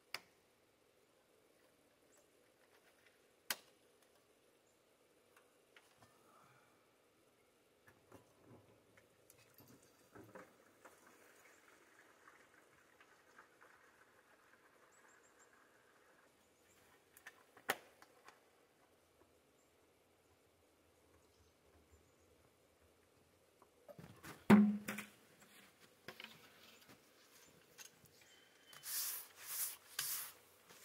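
Mostly quiet, with a few scattered clicks and faint handling rustles, one loud thump about three-quarters of the way through, and near the end short hissing swishes of snow being brushed off a log.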